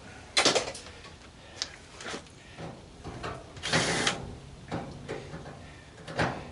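Tool-handling sounds as a cordless drill is picked up: scattered sharp clicks and knocks, with one longer rasping burst about two-thirds of the way through.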